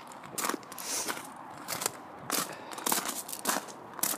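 Footsteps crunching on loose gravel, an uneven walking pace of about two steps a second.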